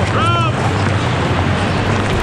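Wind buffeting an outdoor microphone over a steady low rumble, with a brief high-pitched call just after the start.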